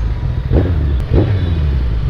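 Sport motorcycle engine running at low speed in slow traffic, a steady low rumble with the sound of surrounding road traffic.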